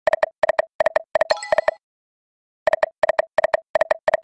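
Video slot game sound effects: runs of short, identical electronic beeps, several in quick succession, as the reels spin and stop. A brief jingle comes at about a second and a half in. After a pause of about a second, another quick run of beeps follows for the next spin.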